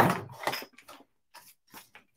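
A few faint, scattered light clicks and rustles from adhesive pearl embellishments and craft supplies being picked up and set down on a cutting mat, mostly in the first second.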